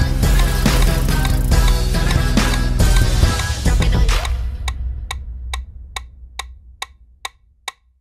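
Dance-break backing track with heavy bass and drums cutting off about four seconds in, a low bass note fading away after it. A metronome click then carries on alone, evenly at about two clicks a second.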